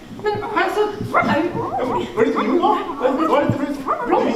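Dog-like whimpering and yipping: a run of short cries that slide up and down in pitch.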